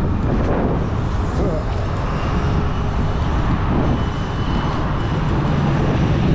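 Steady wind rumble on the camera microphone from riding along a street, with road and traffic noise underneath.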